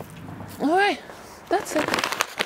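A woman's voice making two short untranscribed spoken sounds, one about half a second in and one near the end, over faint background noise.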